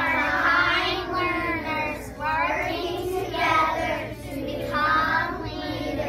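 A class of young children chanting their class promise together in unison, in short phrases with brief pauses between.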